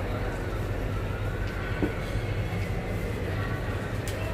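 A steady low rumble with faint background voices, and a single short click a little under two seconds in.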